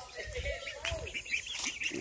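Penned poultry chirping and peeping: many short calls that rise and fall, some low and some high.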